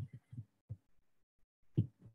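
A pause in a video call: mostly silence, broken by a few faint, short low thumps in the first second and a brief low vocal sound or breath near the end.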